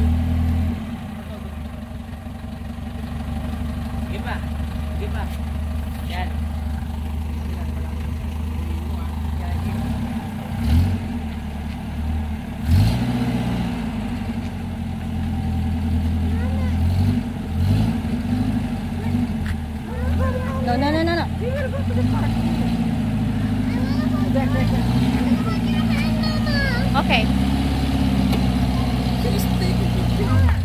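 Engine of a Filipino owner-type jeep running as the jeep is driven slowly, its pitch stepping up and down with the throttle. Voices are heard over it in the second half.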